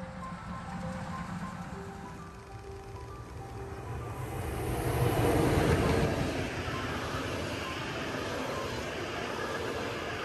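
Background music with a melody, joined about halfway through by the rolling noise of passenger coaches passing close by on the rails. It swells to its loudest just after the middle, then stays steady as the coaches keep going past.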